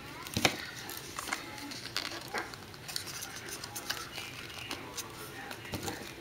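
Small cardboard box being handled, with scattered light clicks and faint rustling as scissors work at its seal sticker.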